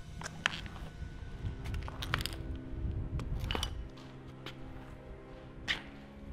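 Sneakered footsteps climbing stairs, a handful of sharp, irregular steps, over background music with sustained tones.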